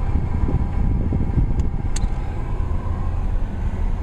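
Inside a moving car: a steady low rumble of engine and road noise, with a couple of faint ticks.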